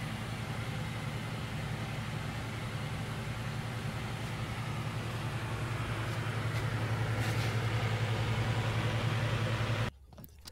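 Wood lathe running with a bowl spinning on its chuck: a steady low motor hum under a hiss. It grows slightly louder and stops abruptly near the end.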